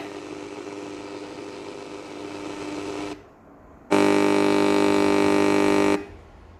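Victor RC-QW10 portable CD radio on the AM (medium-wave) band, tuned off-station: static hiss with a few steady whistle tones, a brief dip about three seconds in, then a loud steady buzz for the last two seconds.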